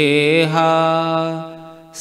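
A man chanting a devotional verse, holding one long sung note on "ha" that fades away near the end.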